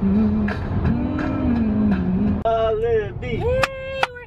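Car road noise inside a moving car under a low, slowly wavering melody line with occasional beats. About two and a half seconds in, this gives way to a woman's higher voice rising and falling in pitch.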